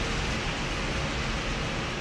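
Steady rushing background noise with a faint constant hum: the room tone of a parking garage.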